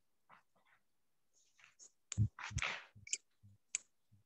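Scattered short clicks and rustling noises, with a few soft low thumps in the second half.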